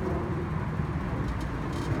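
Steady low rumble of outdoor street background noise, with a couple of faint short ticks near the end.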